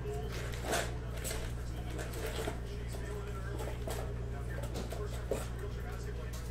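Steady low electrical hum, with a few faint taps and rustles from trading-card packs and paper being handled on the table.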